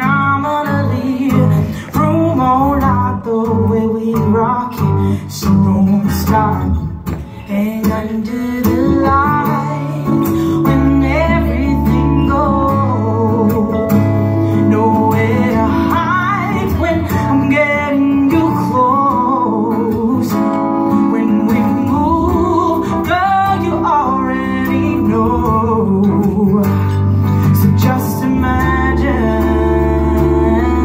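Live pop-soul music: a woman singing with wavering runs, accompanied by guitar and keyboard. For the first eight seconds the sound swells and drops back, and from about ten seconds in it settles into a steady full sound over sustained low keyboard notes.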